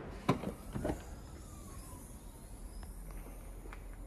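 Ford Mondeo hatchback's boot release pressed: a sharp click as the tailgate latch lets go, a softer knock just under a second later, then faint sounds as the tailgate swings up.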